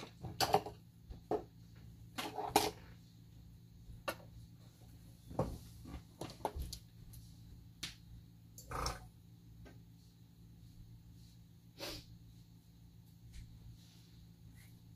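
Ink bottles being rummaged through and handled: scattered light clicks, knocks and rustles, with slightly louder handling noises about two and a half seconds and nine seconds in.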